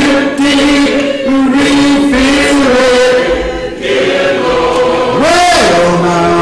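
A man's voice singing in a slow chant, in long held notes that bend between pitches, with a swoop up and back down near the end.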